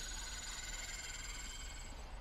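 Faint, steady high-pitched ringing tones on the TV episode's soundtrack, slowly fading.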